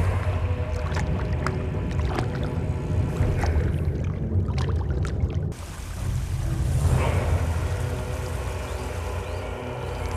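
Background music with held tones over a steady low rush of flowing water, changing abruptly about five and a half seconds in.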